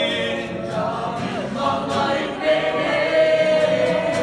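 A group of young people singing a worship song together in many voices, with sustained, overlapping notes and an acoustic guitar played among them.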